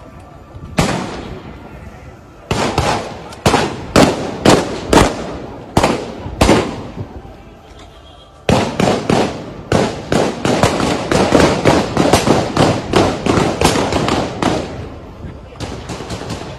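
Gunfire: a single shot about a second in, then a string of separate shots a little under a second apart, then from about halfway a long stretch of rapid shots, several a second, that overlap one another.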